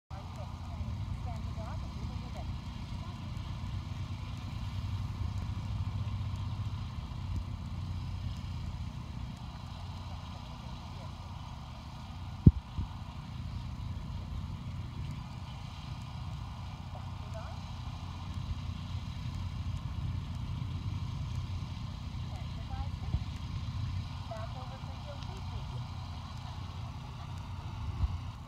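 Outdoor ambience: a steady low rumble with faint, distant voices now and then, and a single sharp click about halfway through.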